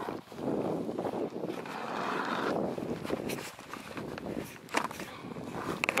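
Hand-cranked ice auger boring through pond ice: a continuous rough grinding scrape as the blades shave the ice, swelling and easing with the turns of the crank.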